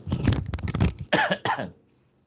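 A man coughing, a short fit of several coughs in quick succession that stops shortly before the end.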